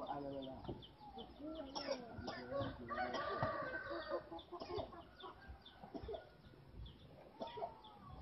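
Birds calling: many short, repeated pitched calls and chirps, thickest in the middle of the stretch.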